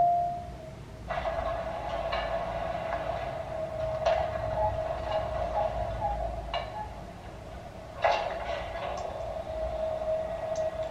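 Anime episode soundtrack: a steady drone held at one pitch, with rushing swells coming in about a second in and again near eight seconds.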